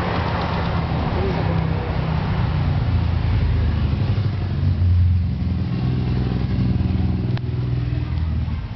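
A motor vehicle engine running steadily, a low hum that swells around the middle, with a single sharp click near the end.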